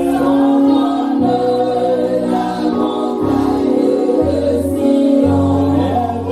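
Gospel worship singing: a man leads a song through a microphone, with group voices singing along. Sustained instrumental chords and a low bass note change about once a second.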